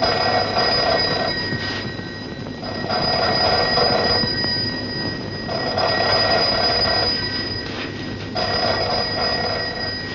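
A bell ringing in four long bursts about three seconds apart, like a telephone, over a steady high whine.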